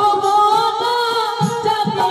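A woman singing one long, slightly wavering held note into a microphone, in the style of Bengali Manasa gaan folk song, with a low drum stroke about one and a half seconds in.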